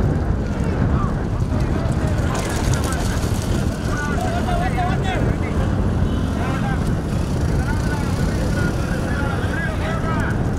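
Heavy wind rumble on the microphone, with scattered shouts and calls from the people running beside the racing bullock cart and from the roadside crowd, a few of them about four seconds in and again near the end.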